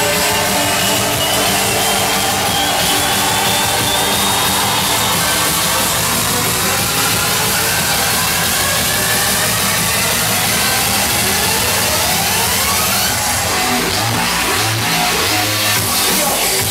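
Loud electronic dance music played live: a sustained, gritty synth sound with slowly rising pitch sweeps building through the middle, and a pulsing bass coming in near the end.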